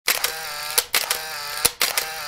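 An edited mechanical sound effect: a pair of sharp clicks, then a buzzing whir about half a second long that ends on another click. It repeats twice, and a third round starts near the end.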